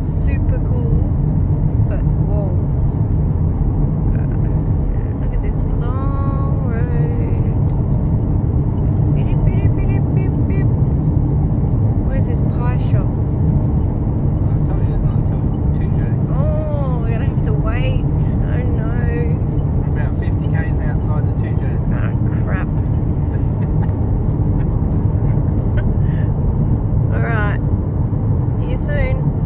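Steady low road and engine rumble heard from inside a moving car's cabin, with a few brief, indistinct voice sounds coming and going over it.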